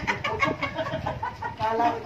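A chicken clucking in a rapid run of short calls.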